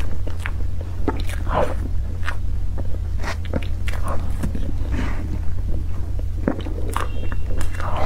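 Close-miked mouth sounds of chewing soft cream cake, heard as a dense string of short clicks, over a steady low hum.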